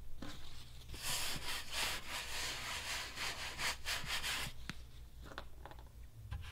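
A hand-held wipe rubbed back and forth over the sanded plastic side of a bucket, cleaning off sanding dust and grease before the repair. It is a run of scrubbing strokes from about a second in, ending at about four and a half seconds.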